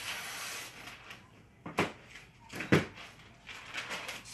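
Picture-hanging wire being wrapped around a hanger on the back of a wooden picture frame: a scraping rub for about the first second, then two sharp clicks about a second apart.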